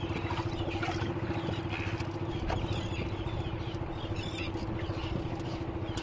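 Small outrigger boat's engine running steadily under way: an even, pulsing drone with a constant hum.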